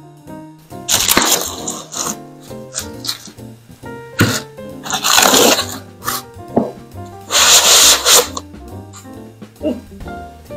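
Plastic bag and foam packaging rustling and scraping in three loud bursts of about a second each, with a sharp knock in between, as a resin 3D printer is unboxed. Background music plays throughout.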